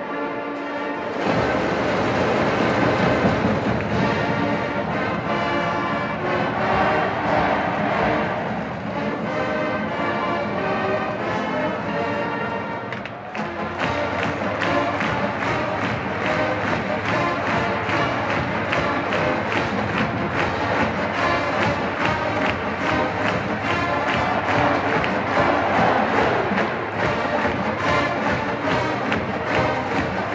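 Marching band brass playing full chords, with a cymbal crash about a second in; after a brief dip about 13 seconds in, the percussion section takes up a steady drum beat under the brass for the rest of the piece.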